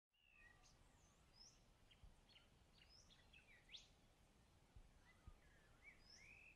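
Faint bird calls: many short chirps and whistled notes, the clearest a quick rising whistle about halfway through, with a few soft low thumps.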